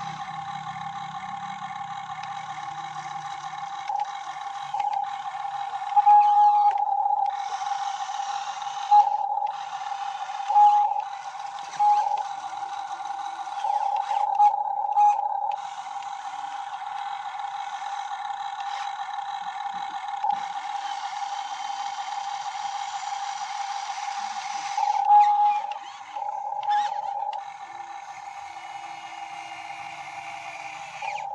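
RC model Hitachi 135US excavator's electric drive whining steadily at one high pitch. It grows louder in several short surges as the boom and bucket are worked through the water and mud.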